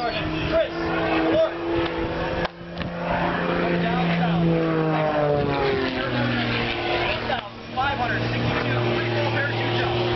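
Engine drone of an aircraft passing over an air show, steady at first, then dropping in pitch about six seconds in as it goes by.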